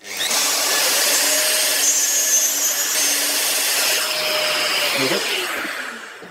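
Festool plunge router running and cutting a 5 mm deep circle into a wooden workpiece, its guide bush run around a circular template. The motor starts at once and is switched off about five seconds in, its pitch falling as it winds down.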